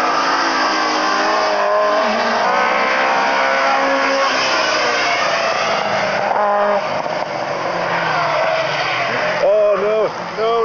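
Rally car engines at high revs, the pitch climbing and dropping through gear changes as the cars are driven hard. Voices come in near the end.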